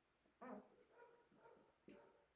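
Marker squeaking briefly on a whiteboard near the end, high and thin. About half a second in there is a faint short call with a clear pitch.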